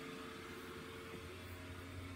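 The small built-in blower fan of an inflatable lawn decoration running steadily, a faint low hum with a few steady tones over an even hiss, keeping the figure inflated. It is a cheap fan.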